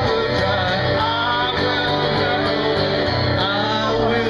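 An acoustic guitar being strummed, with a voice singing over it, in a live performance.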